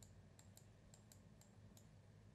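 Near silence with a quick run of faint computer mouse clicks, about five a second.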